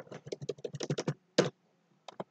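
Typing on a computer keyboard: a quick run of about a dozen keystrokes, then a single stroke after a short gap. The typed word is being deleted with the backspace key.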